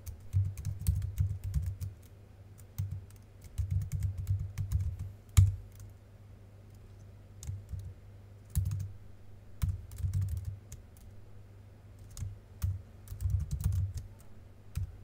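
Computer keyboard typing in bursts of quick keystrokes separated by short pauses, with one louder keystroke about five seconds in.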